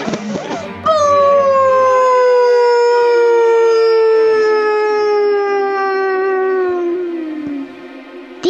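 One long pitched wail that starts suddenly about a second in and slides slowly and steadily down in pitch over some seven seconds, fading out near the end.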